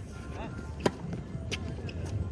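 Tennis racket striking the ball on a serve: one sharp crack about a second in, followed half a second later by a fainter knock.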